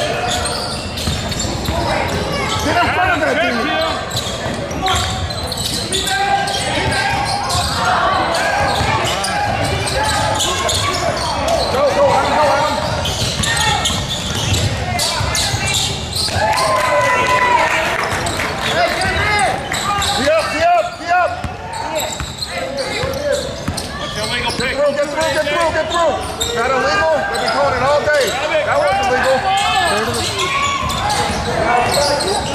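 A basketball bouncing on a hardwood gym floor during play, mixed with indistinct shouting and chatter from players and spectators, echoing in a large gym.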